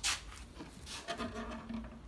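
Handling noise of a bağlama (Turkish long-necked lute) being turned over: a brief rub at the start, then a faint held tone in the second half.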